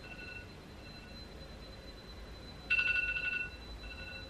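A phone's ringing alert: a short, bright electronic ring of a few high notes with fading echoes, heard once about three quarters of the way in after the tail of the previous ring at the start, repeating and going unanswered.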